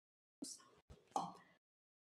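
Near silence broken by a few faint, very short clicks: one about half a second in, a tiny tick near one second, and another soft click a little later.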